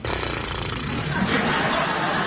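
Studio audience laughing, a dense crowd noise that starts suddenly and swells a little toward the end.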